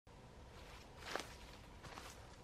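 Two brief crackling rustles in dry forest leaf litter, the louder about a second in and a fainter one near the end, over a faint steady background.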